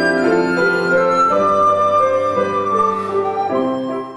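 Live flute melody in sustained notes, accompanied by grand piano chords.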